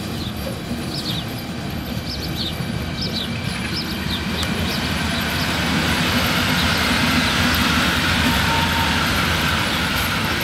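DB Class 151 electric locomotive running light, approaching and passing close by. Its wheel-on-rail rumble grows louder and peaks about six to nine seconds in. Birds chirp during the first few seconds.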